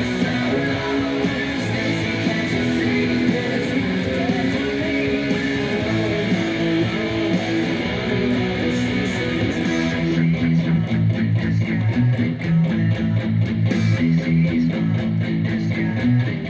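Electric guitar played with a pick: ringing chords and notes at first, then, about ten seconds in, a low riff with steady, evenly spaced picked notes.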